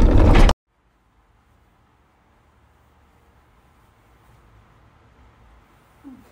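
Jeep driving on a rough dirt trail, a loud low rumble of engine and tyres with wind noise, cut off abruptly about half a second in. Near silence follows, with only a faint hiss that swells slightly near the end.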